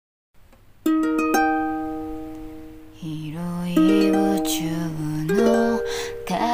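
A ukulele chord picked out in a few quick notes about a second in, left ringing, then a woman starts singing the song over ukulele accompaniment about three seconds in.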